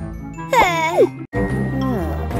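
Playful children's background music, with a wordless, high-pitched cartoon character voice about half a second in that slides up and down in pitch. The sound drops out suddenly for a moment just after a second in, then the music carries on.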